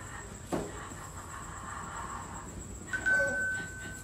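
A single clear, steady tone like a chime or beep rings for about a second near the end, starting with a sudden onset. A short click comes about half a second in.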